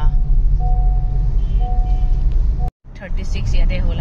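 Steady low road-and-engine rumble inside a moving car's cabin, with a vehicle horn sounding twice in traffic, each a steady two-note blast of about a second. Near the end the sound cuts out abruptly for a moment and a voice follows.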